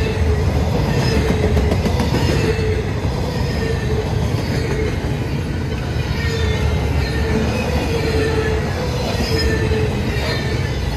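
Loaded double-stack container well cars of a freight train rolling past, with a steady low rumble of wheels on rail. A wavering, sustained wheel squeal runs over the top.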